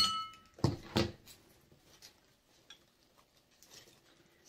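Scissors snipping through the wire stems of artificial flowers. A sharp metallic clink with a short ring comes first, then two more snips within the first second, then only faint clicks as the stems are handled.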